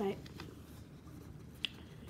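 A single short, sharp click about one and a half seconds in, after a spoken word, in a small room.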